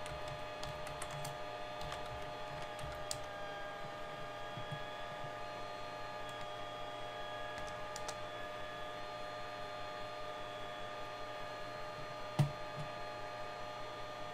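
Scattered clicks of a computer keyboard and mouse over a steady electrical hum, with one louder click near the end.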